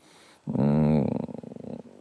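A man's drawn-out hesitation hum, a single held 'mmm' that begins about half a second in and trails off into a creaky rasp.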